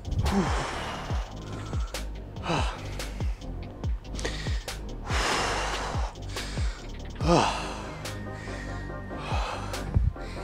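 A man's heavy, gasping breaths every couple of seconds as he recovers from an exercise set, over background music with a steady beat.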